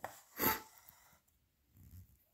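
A single short breath, sharp and airy, about half a second in, otherwise near silence.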